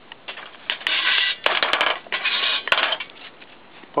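Steel pot-support rods being slid through the holes in a thin sheet-metal camp stove, metal scraping on metal in four or five passes with a few sharp clinks.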